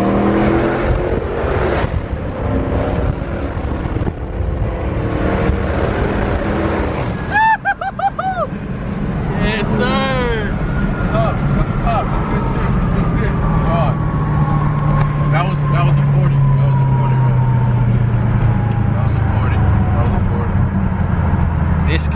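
2014 Dodge Challenger R/T's 5.7 HEMI V8 heard from inside the cabin, its pitch rising under hard acceleration in the first couple of seconds. Over the second half the engine note falls slowly and steadily as the car slows.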